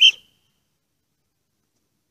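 A single brief high-pitched blip, whistle-like, right at the start.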